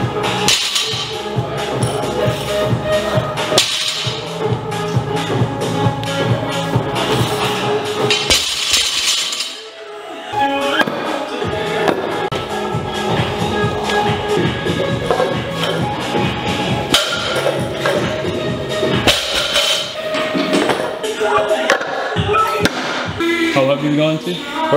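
Background music with a rhythmic beat, dipping briefly a little before the middle.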